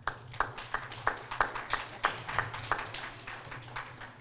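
A small audience applauding with many separate hand claps, thinning out and fading near the end.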